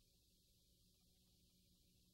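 Near silence: faint steady hiss and hum of an empty sound track.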